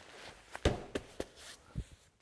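Weighted sandbags being handled and set down on a fabric-covered tabletop: a few dull thuds, the loudest about two-thirds of a second in, with light rustling of fabric.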